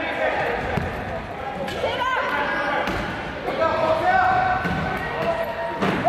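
A basketball bouncing on a hardwood gym court. Short, high squeaks of wheelchair tyres on the floor come about two seconds in and again at the end.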